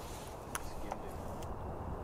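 Low, steady outdoor background with a few faint, sharp clicks, the clearest about half a second in.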